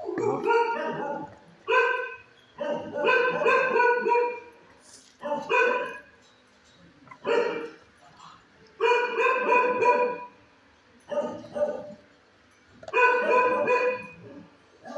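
Dogs in shelter kennels barking in repeated bouts, a loud burst every one to two seconds.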